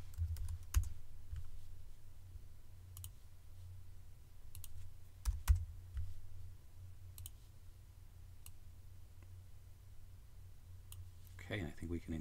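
About ten sharp, irregular clicks of a computer mouse and keyboard while text is edited on a computer, over a low steady hum. A man's voice starts near the end.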